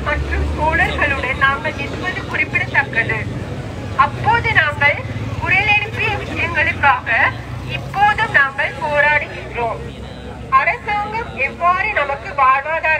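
A woman's voice amplified through a handheld megaphone, speaking in phrases with short pauses, over a steady low engine rumble.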